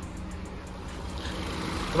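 Chevrolet Beat's 1.2-litre three-cylinder petrol engine idling steadily with its air-conditioning compressor engaged, a low, even hum. A faint hiss comes up about a second in.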